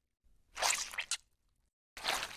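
Cartoon squelch sound effect: a short wet squish about half a second in, followed by a brief second squish just after a second in, and another beginning at the very end.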